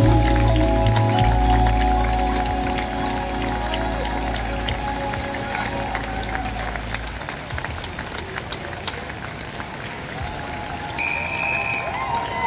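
A live jazz band's closing held chord, with sustained bass and upper notes, rings out and fades over the first several seconds. Audience applause and crowd noise then fill the rest.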